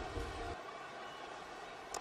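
Faint open-air cricket-ground ambience, a steady hiss with a low rumble that drops away about half a second in. Near the end comes one sharp crack of a cricket bat hitting the ball.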